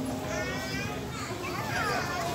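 Children's voices chattering among passers-by, in two short stretches: about half a second in and near the end.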